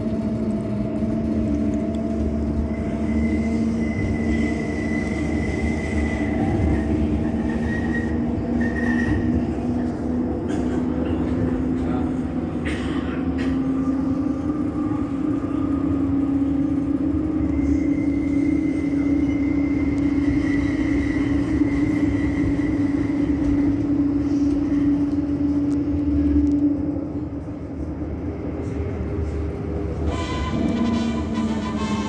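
Bombardier Flexity Outlook tram's electrical equipment giving a steady low hum over a rumble. The hum edges up in pitch about halfway through, and a fainter high whine comes and goes. The sound dips briefly near the end.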